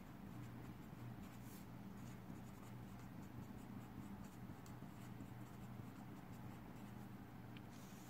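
Marker pen writing capital letters on paper: faint short scratches of the tip over a low steady hum.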